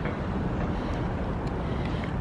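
Wind blowing over the camera microphone: a steady rumbling noise strongest in the low end, with no distinct events.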